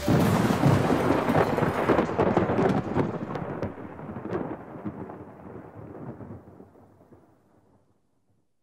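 A trailer sound effect: a sudden loud crash that breaks into a long crackling rumble like thunder, with scattered sharp cracks, fading steadily away over about seven seconds.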